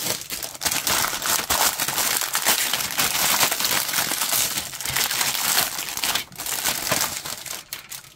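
Thin clear plastic bag crinkling as hands pull it open around a plastic model-kit sprue, a continuous crackle that stops near the end.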